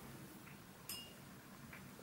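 Quiet room tone with a single small, sharp clink about a second in, like a hard object such as a brush or a palette tapped against the paint box.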